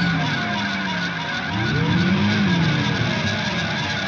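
Heavy metal music from the album's recording: a distorted electric guitar with slow sliding pitch bends, first falling, then rising and falling again in an arch, over sustained ringing chords.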